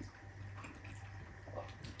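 Faint sounds of eating by hand: fingers pressing and mixing rice on a plate, with a few soft clicks near the end, over a steady low hum.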